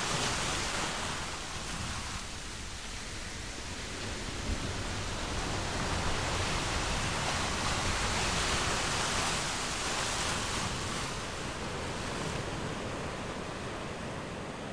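Ocean surf: a steady wash of breaking waves that swells in the middle and eases toward the end.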